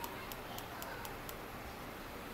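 Water washing across a perforated aquarium sump drip tray and dripping through its holes, the pump just turned up to full: a steady wash with faint, irregular ticks.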